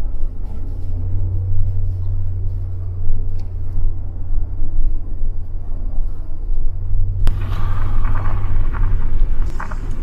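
Steady low rumble of a car driving slowly. About seven seconds in there is a sharp click, followed by a rise in hiss.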